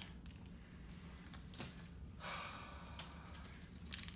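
Faint rustle and small clicks of a Milo wrapper being handled and opened, with a short breathy rush of noise a little past halfway.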